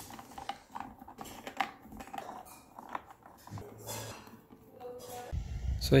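Scattered light clicks and knocks of hand tools on a jump starter's plastic case as its screws are taken out with a screwdriver.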